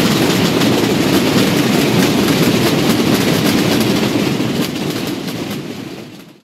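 Massed Holy Week drums, mostly rope-tensioned snare drums, playing together in a loud, dense, continuous roll. The roll fades out near the end.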